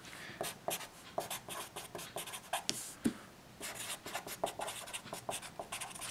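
Marker pen writing on paper: a run of short scratchy strokes, with a brief pause a little past halfway.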